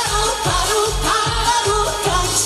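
A woman singing a Korean trot song live into a microphone, her voice held and wavering with vibrato, over backing music with a steady bass beat.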